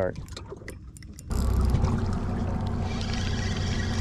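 Spinning reel cranked fast, giving a steady whirring with a low hum that starts suddenly about a second in, after a few light clicks.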